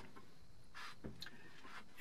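Quiet room tone in a pause between sentences, with one short faint hiss just under a second in.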